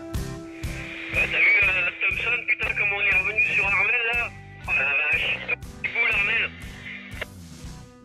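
A man's voice coming over a marine VHF radio, thin and tinny, in several short phrases with pauses between them, over background music with a regular beat.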